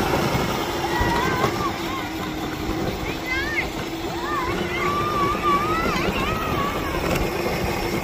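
Electric drive motors and gearboxes of a Power Wheels Jeep, run on a 20-volt battery, whining at a steady pitch as the plastic wheels roll over dry grass.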